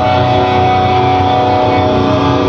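Distorted electric guitars of a live metal band holding a sustained, ringing chord at loud volume, with little drumming under it.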